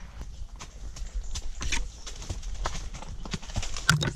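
A pony's hoofbeats on a soft grass track: irregular thuds about four a second, over a low rumble.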